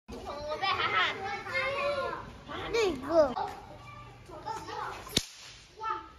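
Young children's high voices, sliding up and down in pitch, loudest through the first three seconds or so and softer after. A single sharp click a little after five seconds in.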